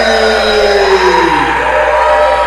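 A long drawn-out voice, one held note sliding slowly down in pitch and fading out about a second and a half in.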